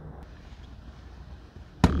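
Faint, even background noise with no distinct source, then a sudden thump near the end where the audio cuts to the next take. A man starts speaking right after it.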